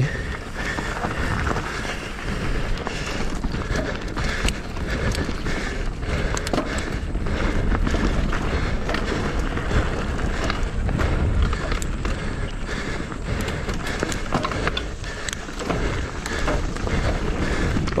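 Mountain bike riding fast over a rough dirt trail: a steady rumble of tyres on dirt and rock, with frequent clicks and rattles from the bike.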